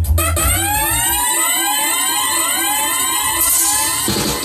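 Electronic siren effect of the kind dropped by a reggae sound-system DJ: a fast run of rising whoops, about three a second. It plays over the backing track's bass at first and ends in a burst of hiss near the end.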